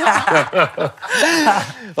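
Men laughing together in a run of short chuckles.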